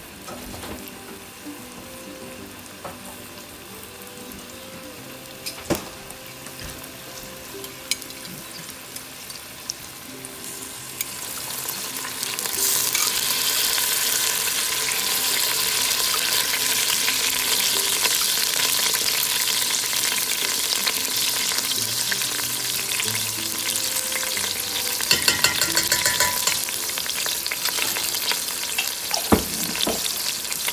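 Diced vegetables and tomato paste frying in olive oil in a stainless steel pot: a faint sizzle with a few sharp knocks at first, then about twelve seconds in the sizzle swells to a loud, steady crackle that holds to the end. A few short clatters come near the end.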